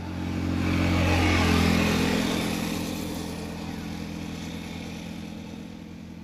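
A motor vehicle passing by, its noise swelling over the first second or two and then slowly fading away.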